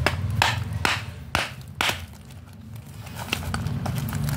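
Small hammer striking dry pieces of edible black slate clay, about five sharp knocks in the first two seconds as the pieces break, then a faint click. A steady low hum runs underneath.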